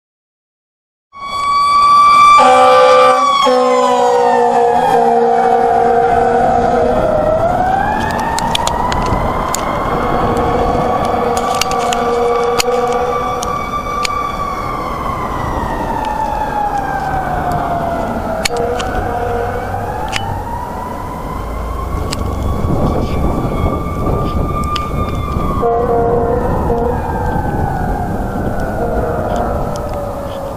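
Fire engine siren wailing, sliding slowly up and down in pitch. Steady horn blasts sound over it about two seconds in and again near the end. It starts about a second in.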